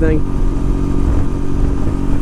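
1982 Honda Silver Wing's 500 cc V-twin engine running steadily at highway cruising speed, about 65 mph, a little buzzy, with wind noise on the microphone.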